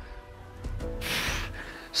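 Background music with held tones and a bass line, with one short, hissing exhale about a second in, the breath of someone working under load.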